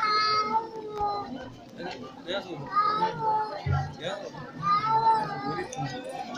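A crowd of voices singing in long, held notes that rise and fall.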